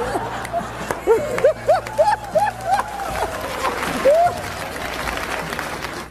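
Live audience applauding, with scattered short laughs and whoops over the clapping.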